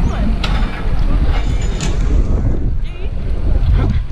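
Wind buffeting a helmet-mounted action camera's microphone, a heavy, steady rumble, with a few short clicks and faint voices of people nearby.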